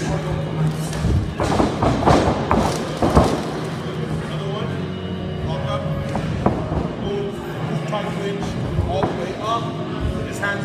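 Thuds and scuffs of wrestlers' feet and bodies on the ring mat, bunched in the first few seconds with the sharpest thud about three seconds in, over steady background music and voices.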